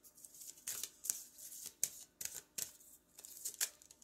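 Oracle cards being shuffled by hand: a run of short, crisp card strokes, about three or four a second, unevenly spaced.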